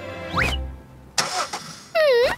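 Cartoon sound effect of a snowmobile engine, with a rising sweep and a low rumble about half a second in, then a hiss of noise, over background music.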